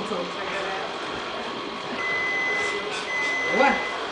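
A steady, high electronic beep starts about halfway through, holds for about a second, breaks briefly, then sounds again, over the chatter of people in the room.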